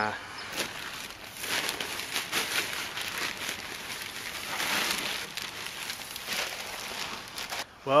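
A plastic bag of mulch crinkling as it is handled and emptied, with irregular rustling and crackling as the mulch pours out and is spread by hand.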